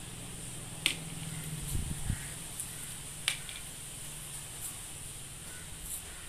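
Small paper candy wrappers being picked open by hand, giving a few sharp clicks and light crinkles, the two loudest about a second in and just past three seconds.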